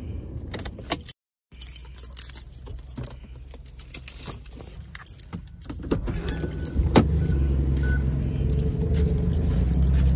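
Car keys jangling and clicking as the key is worked out of the ignition. About six seconds in, a steady low rumble sets in, with one sharp click a second later.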